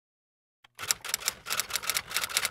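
A typing sound effect: a quick run of key clicks, about ten a second, starting a little over half a second in, laid over text being typed out on screen.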